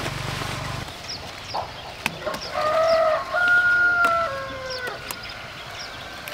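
A rooster crowing once, a stepped cock-a-doodle-doo lasting about three seconds and starting about two seconds in.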